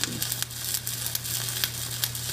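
Shielded metal arc (stick) welding arc on steel plate, crackling and sizzling steadily with irregular sharp pops as the electrode lays a bead along a horizontal T-joint, over a steady low hum.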